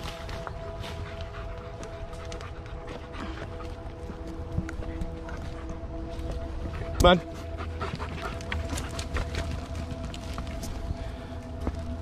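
Large shepherd-type dog panting, with a single sharp thump about seven seconds in.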